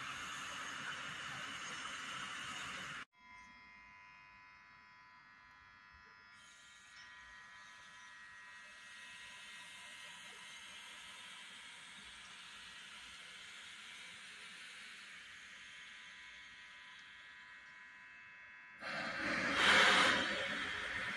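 Freight train with a Medway electric locomotive and car-carrier wagons at a station: a steady electric whine of several even tones over a soft rolling hiss. The sound changes abruptly to a louder rush of hiss about three seconds in and again near the end.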